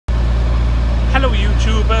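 Boat engine running steadily under way, a low even drone.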